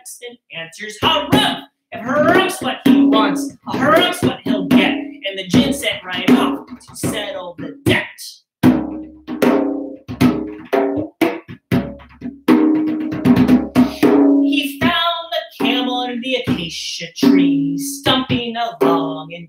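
Djembe played with bare hands in a quick, busy rhythm of open tones and slaps, with a wordless sung melody held over it; both break off briefly a little before halfway, then resume.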